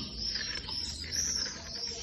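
Small birds chirping in the background: a run of short, high chirps repeating through the pause.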